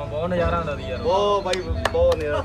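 High-pitched young voices in drawn-out, sing-song phrases, with two sharp clicks near the end.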